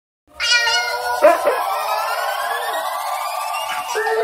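Opening sound effect made of sustained electronic tones, with one tone slowly rising in pitch and a short sliding sound about a second in.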